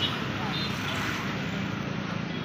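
Busy street ambience: a steady wash of traffic noise with indistinct voices of people in the background.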